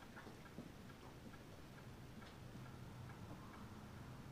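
Near silence: room tone with a low hum and a few faint scattered ticks.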